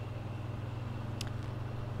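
A steady low hum with faint hiss, the background noise of the recording, and one short faint click a little after a second in.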